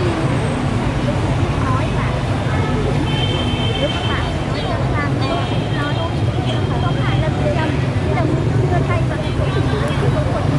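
Busy city street ambience: a steady rumble of motorbike and car traffic, with voices of people around.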